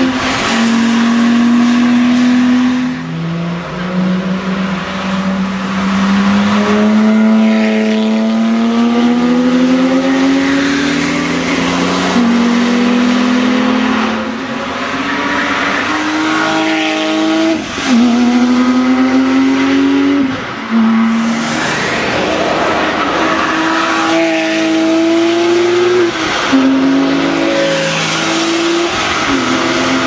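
Porsche 997 flat-six engines at high revs as several cars pass one after another, each note climbing and then dropping sharply at the gear changes.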